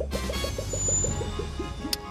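Cartoon soundtrack effect: a run of short rising blips, about eight a second, slowing toward the end, with a brief high tone in the middle and a sharp click just before the end.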